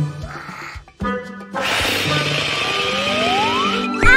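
Cartoon balloon sound effect: a hissing rush of air with a whistle that rises in pitch for about two seconds, over children's background music.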